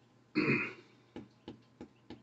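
A man makes one short, rough throat sound behind his hand, about half a second long. It is followed by faint, regular clicking about three times a second.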